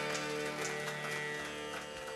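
Closing held chord of a live Afghan ghazal ensemble slowly fading, with a few light struck notes over it.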